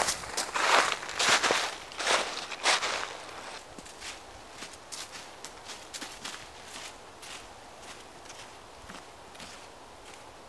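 Footsteps crunching through thin snow over dry leaf litter, loud for the first three seconds, then fainter and evenly paced as the walker moves away.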